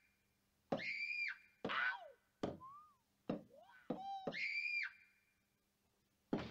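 Roland SPD-20 electronic percussion pad struck with drumsticks, triggering electronic sound-effect samples: about six short pitched tones, several sliding or falling in pitch, each cut off by a short silence before the next hit.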